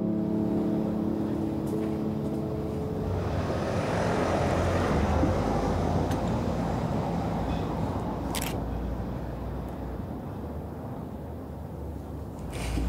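Outdoor street ambience with a passing car: traffic noise swells to a peak about four to five seconds in, then fades. A short, sharp click comes around eight seconds in.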